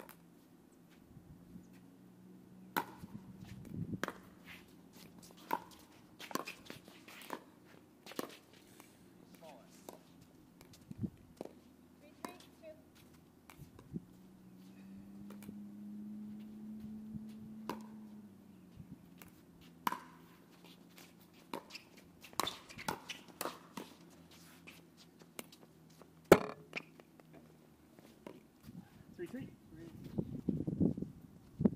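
Sharp pops of pickleball paddles hitting a plastic pickleball, irregularly spaced through a rally, with the loudest pop about three-quarters of the way through. Underneath runs a low steady hum that swells for a few seconds in the middle.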